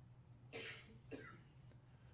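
A faint, short cough about half a second in, followed by a smaller throat sound a little after a second, against near silence.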